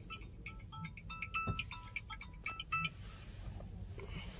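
Hyundai Venue's electronic power-on chime: a short tune of quick, clear beeping notes at a few pitches, lasting about two and a half seconds, as the start button switches the car on.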